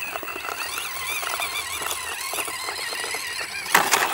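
Axial SCX24 Gladiator mini RC crawler's small electric motor and gears whining, the pitch wavering up and down with the throttle as it climbs loose gravel. Near the end comes a short clatter as the truck tips over onto its roof.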